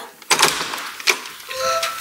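A few sharp clicks and knocks from a front door being unlatched and opened, with a short electronic tone about one and a half seconds in.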